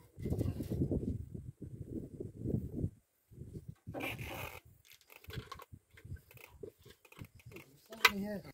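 Handling noise from work in a backhoe loader's engine bay, with the engine off: scattered knocks and rattles as the air filter housing cover is handled and lifted off.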